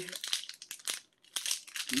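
Plastic wrapper of a protein bar crinkling as it is handled, a run of short crackles with a brief pause about a second in.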